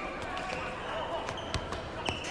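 Basketball being dribbled on a gym floor: several separate bounces, the loudest about one and a half seconds in, over a steady low background of the gym.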